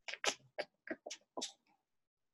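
A run of about seven faint, irregular short clicks over a second and a half from a computer keyboard and mouse.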